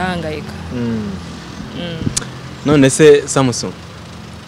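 Conversational speech in short phrases, with a low steady rumble underneath.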